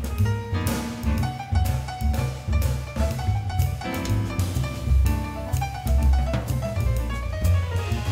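Jazz group playing: drum kit with K Zildjian cymbals being struck with sticks, together with piano and a moving low bass line.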